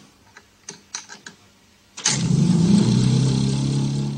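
A few faint clicks, then about halfway through a prototype magnetic motor-generator starts suddenly and runs with a loud, steady hum.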